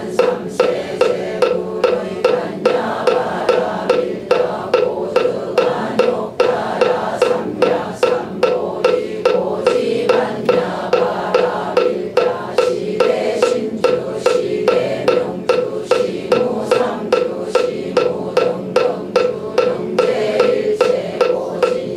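A wooden moktak (Buddhist wooden fish) struck in a steady beat of about two strokes a second, keeping time for a congregation chanting a Buddhist liturgy in unison.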